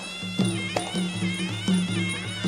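Traditional Kun Khmer ring music: a wailing, wavering reed-oboe melody over a steady beat of drums and small cymbals.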